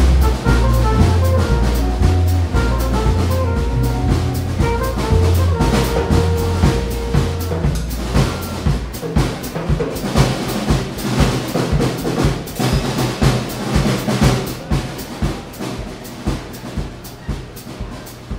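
Live jazz combo on drum kit, electric bass and guitar: the bass steps through notes under held melody notes, then about halfway through the bass and melody drop out and the drum kit plays on alone with cymbals, getting gradually quieter.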